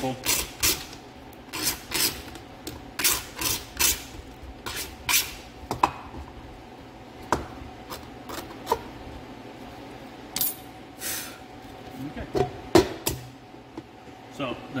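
A hand tool scraping excess plastic off the edge of a hollow plastic bowl in short, irregular strokes, coming fast at first and thinning out later, with a few sharp knocks near the end as the piece is handled.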